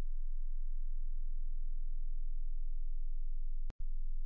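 A steady low hum, with a brief cut to silence about three-quarters of the way through.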